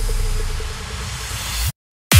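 Psytrance breakdown: a held deep bass note under a hissing white-noise wash, which stops dead near the end, leaving silence.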